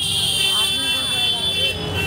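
A vehicle horn held in one long, steady, high-pitched blast that stops shortly before the end, over the voices of a street crowd.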